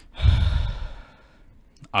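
A man's heavy sigh: one loud, breathy exhale just after the start, fading out within about a second.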